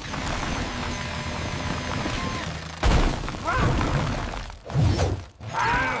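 Cartoon sound effects of a powered drill attachment breaking up hard, compacted ground: a steady grinding for about three seconds, then heavy crashing impacts of earth breaking apart.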